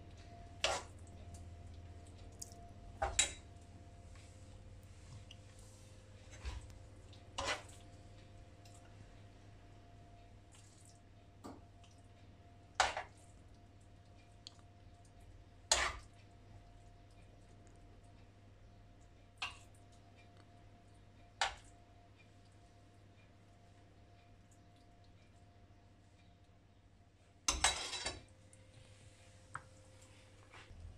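A spoon clinking against a pan of risotto now and then, about a dozen short sharp clinks a few seconds apart, with a brief rattle of dishware near the end, over a faint steady hum.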